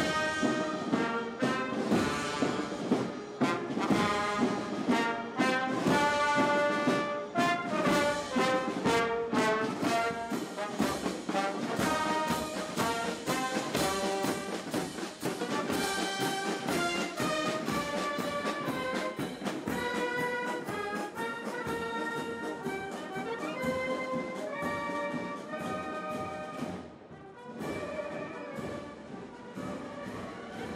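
Marching military band playing a march: brass carrying the tune over bass drum and cymbal strokes, with a brief drop in level near the end before it carries on.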